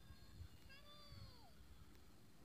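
Near silence, with one faint animal call about a second in that rises slightly in pitch and then falls away.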